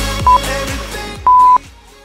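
Workout interval-timer beeps: a short high beep, then about a second later a longer, louder final beep that ends the countdown. Both play over dance music with a steady beat, which fades out right after the last beep.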